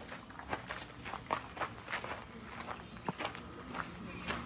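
Footsteps walking over a paved driveway and path, about two to three steps a second.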